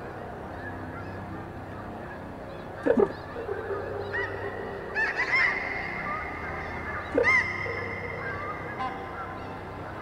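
Experimental sound-art recording: three loud goose-like honking calls, about two seconds apart, over a bed of held tones that builds from about halfway in.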